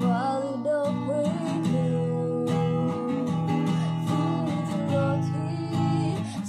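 A woman singing a Karen gospel song over a strummed acoustic guitar with a capo, holding one long note near the middle.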